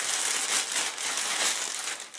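Thin clear plastic bag crinkling and rustling steadily in the hand as a laptop power adapter is handled inside it and taken out.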